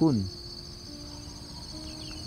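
Steady, high-pitched chorus of insects chirring in grass.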